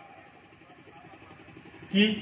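Faint, steady hum of an idling engine, with an even low throb.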